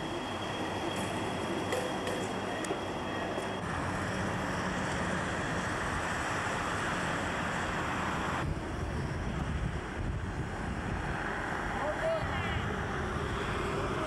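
Steady noisy outdoor background, changing abruptly about four seconds in and again about eight and a half seconds in.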